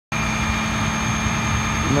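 Flatbed tow truck's engine idling steadily, a constant hum over a low rumble.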